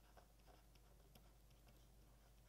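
Faint, irregular taps and scratches of a stylus writing on a tablet, over a steady low electrical hum.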